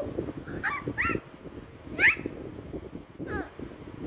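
Short, high-pitched animal calls, about four of them, each a brief sweeping squeak; the loudest, about two seconds in, rises sharply in pitch.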